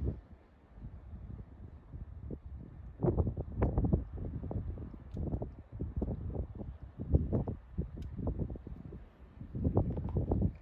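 Wind buffeting the microphone in irregular gusts, a low rumble that swells and drops unevenly and grows stronger about three seconds in.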